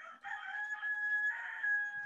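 A rooster crowing once: one long, held call lasting about a second and a half.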